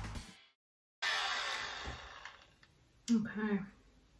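Background music fades out, then after a brief dead gap a mini leaf blower's whir starts suddenly and winds down, dying away about two and a half seconds in. A woman's short voiced sound comes near the end.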